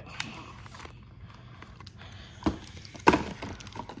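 Cardboard advent calendar being handled: a few sharp clicks and knocks against the box, the loudest about three seconds in.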